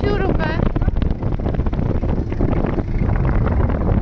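Strong sea wind buffeting the microphone: a loud, steady, deep rumble with no pitch to it.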